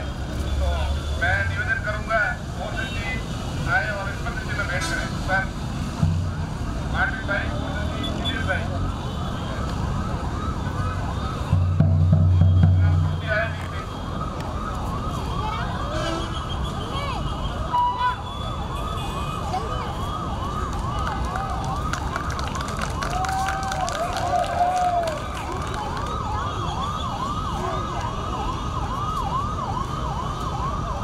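Crowd voices, with a loud low hum about 12 seconds in, then a siren: a fast, evenly repeating rise-and-fall wail that sets in about halfway and keeps going.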